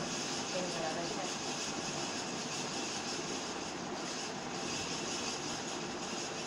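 Steady, even background hiss at a constant level, with a faint murmur of voice about half a second to a second in.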